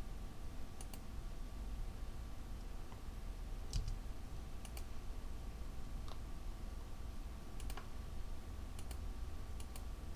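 Sparse clicks of a computer mouse and keyboard, about seven in all with several in quick pairs, as PCB tracks and vias are placed in KiCad, over a faint steady hum.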